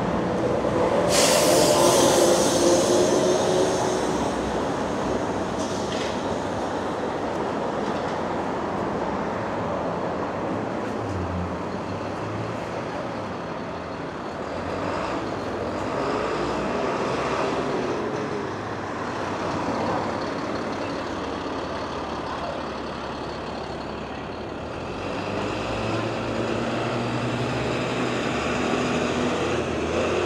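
City street traffic: vehicles passing and idling at an intersection, a steady mix of engines and tyre noise. About a second in, a sudden loud hiss sounds and fades over two or three seconds, the loudest thing heard; a lower engine hum builds near the end.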